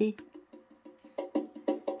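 Background music: a quick, light tapping rhythm of short pitched notes, about six or seven a second, growing louder in the second half.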